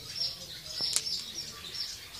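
Swallows twittering, short high chirps repeating several times a second, with one sharp click about halfway through.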